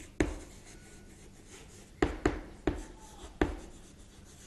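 Chalk writing on a chalkboard: faint scratching strokes with sharp taps as the chalk meets the board, one just after the start and a quick run of about five in the second half.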